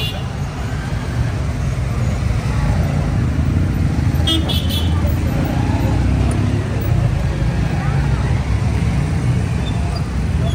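Steady urban road traffic with a low rumble, and a brief vehicle horn toot of a few quick pulses about four seconds in.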